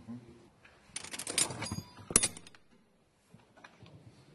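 Bowls and spoons clattering at a food serving hatch in a quick run of knocks and clinks for most of a second, then one sharp loud knock.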